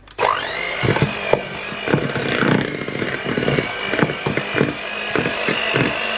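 Breville electric hand mixer starting up with a rising whine, then running steadily. Its beaters knock against the bowl as they soften stiff mascarpone.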